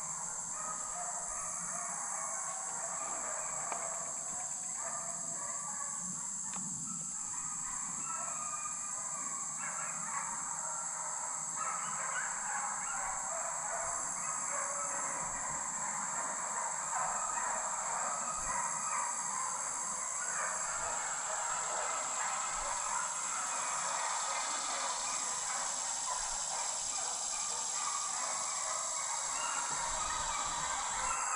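A pack of deer hounds baying in the woods as they run deer on a drive, many voices overlapping, over a steady high drone of summer insects.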